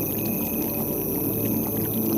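Eerie droning background score: low sustained tones under steady high-pitched ringing tones, with no sudden events.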